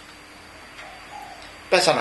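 A faint bird call, two short low notes about a second in, heard in a pause in a man's speech. The speech resumes near the end.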